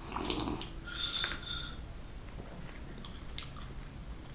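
Drinking from a mug: a short sip, then a louder slurp about a second in, followed by faint mouth clicks of chewing.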